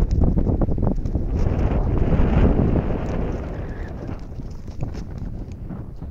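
Wind buffeting a handheld camera's microphone: a steady low rumble with a gust that swells about a second and a half in and slowly eases off, with a few light knocks in the first second.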